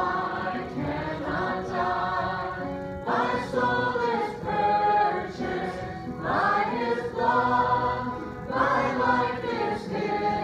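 Congregation singing a hymn together, led by a woman's voice on a microphone, with acoustic guitar accompaniment; the sung phrases come in long held notes.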